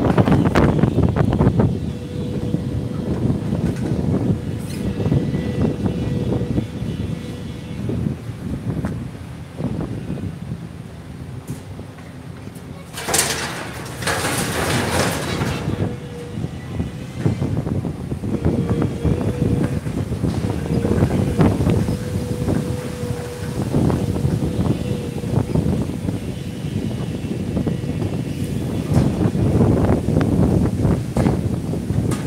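Wind buffeting the microphone over city street noise, with a faint steady hum that comes and goes. A louder hissing rush comes about halfway through.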